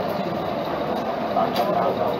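Indistinct, low voices over a steady background hum of room noise, with no clear words.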